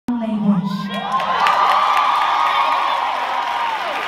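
Concert audience cheering, many high voices held together in a sustained shout, heard from among the crowd. A lower voice sounds briefly at the very start.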